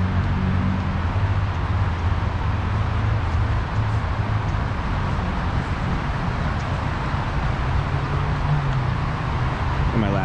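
Steady rush of the rain-swollen Los Angeles River running fast over its rapids, with a low traffic rumble underneath.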